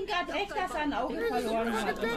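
Several voices talking over one another: overlapping speech with no other sound standing out.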